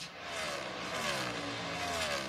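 V8 engines of NASCAR Cup Series stock cars running at full speed past the trackside microphones, the engine note falling in pitch as they go by.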